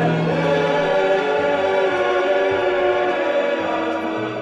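Orchestral easy-listening music: a choir singing long, held chords over sustained orchestral strings.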